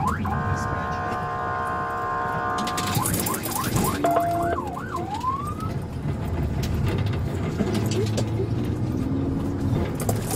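Police car siren sounding a steady tone for about three seconds, then a few quick rising-and-falling sweeps that stop about six seconds in. The patrol car's engine and road noise run underneath.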